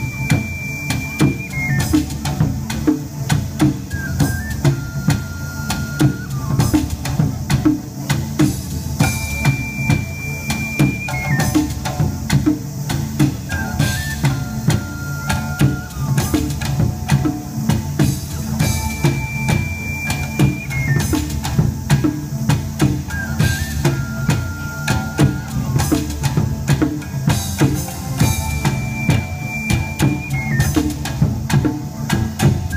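Taiko drums play a steady, driving rhythm, with large and small drums beating several strokes a second. Over them an ocarina plays a melody of long held high notes that step down, in a phrase that repeats about every ten seconds, with a shamisen accompanying.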